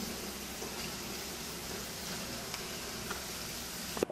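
Water hissing steadily as it sprays in a fine jet from a crack in a grey polybutylene pipe inside an opened wall: a pressurised leak from the cracked pipe.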